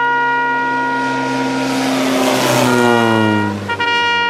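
A brass band holds one long sustained chord while a light propeller aircraft flies low overhead: its engine noise swells to the loudest point about two and a half seconds in and its pitch falls as it passes. Near the end the band moves on to short notes.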